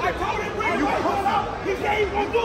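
People talking over one another in a crowd: several overlapping voices, with no other distinct sound.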